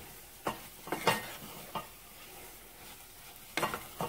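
Wooden spatula stirring and scraping thick choux pastry dough around a stainless steel saucepan. Short sharp scrapes and knocks against the pan come about half a second in, about a second in and near two seconds, with a quieter stretch before a few more near the end.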